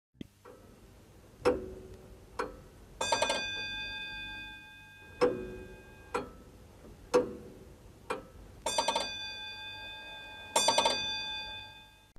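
A clock ticking about once a second, broken three times by a short burst of rapid bell strikes that ring on and fade over a second or two, like an alarm-clock bell.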